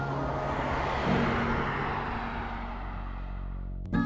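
A vehicle passing by: a rush of noise that swells over the first second or two and then fades. Soft background music with low held notes plays under it.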